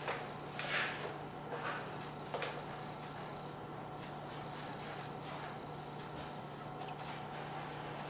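Quiet room tone: a steady low hum and faint hiss, with a few soft swishes in the first two and a half seconds. No piano notes sound.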